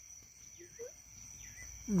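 Insects trilling in one steady high tone, with a few faint short chirps in the middle.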